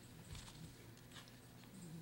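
Near silence: room tone in a pause between words.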